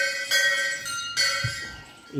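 A metal temple bell struck three times, each strike ringing on and fading before the next.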